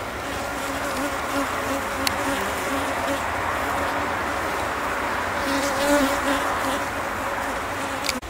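Honeybees buzzing around an open hive: a steady hum with the wing tone of single bees wavering as they fly close.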